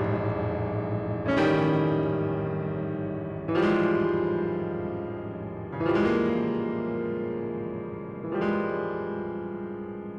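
Solo piano playing a recent contemporary piece: four chords struck about two seconds apart, each left to ring and fade before the next.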